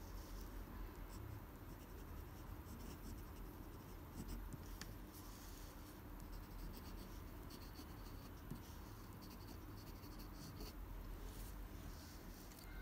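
A pen writing cursive words on paper: faint scratching of the tip across the paper in short strokes, with brief pauses between them.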